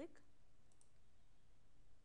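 Near silence with faint room tone, and a faint computer mouse click about three quarters of a second in.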